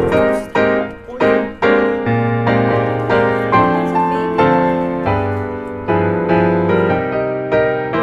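Background piano music, with notes struck at a steady, unhurried pace, each one ringing and fading.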